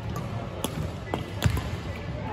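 Badminton rackets striking a shuttlecock during a doubles rally, together with players' footfalls on the court: a few sharp hits, the loudest about one and a half seconds in.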